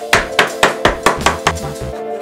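Shoemaker's hammer tapping an insole down onto a plastic shoe last: seven sharp, quick strikes at about four a second, over background music.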